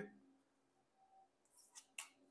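Mostly near silence, with faint short rustles and a sharp click near the end as a tarot card is drawn from the deck and laid on a wooden table.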